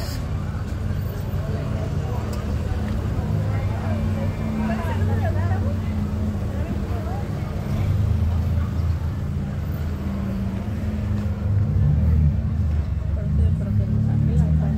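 Busy street ambience: a steady low rumble of traffic with faint background voices.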